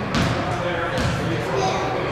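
Basketball bounced on a hardwood gym floor, two sharp bounces about a second apart, ringing in the large hall over a steady murmur of voices.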